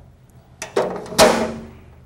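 Manual transfer switch (double-throw safety switch) handle thrown into the up position: a short rattle, then a loud, sharp metallic snap that rings briefly as the switch blades seat.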